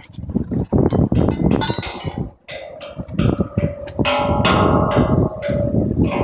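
Mallet strikes on large outdoor playground percussion instruments: scattered knocks, a short lull, then from about three seconds in a quick run of strikes on a big steel tongue drum whose notes ring on.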